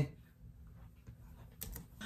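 Quiet room, then a few quick clicks of computer keys about one and a half seconds in.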